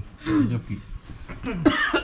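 Short bursts of a person's voice, not words: a brief sound about half a second in, then a louder vocal burst with a sharp cough about a second and a half in.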